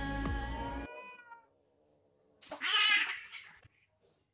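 Background music fades out in the first second or so. About two and a half seconds in, a domestic cat gives one loud yowl lasting about a second.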